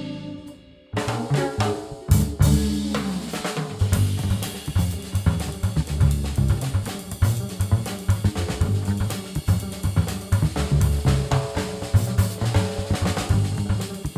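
Live jazz-fusion band, led by a busy drum kit: snare, bass drum, rimshots and cymbals, over an upright bass line and electric guitar. Just before a second in the music drops out almost to nothing, then the band comes back in together and plays on.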